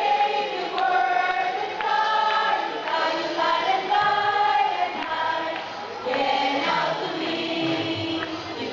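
A choir singing a hymn in long held notes, phrase after phrase.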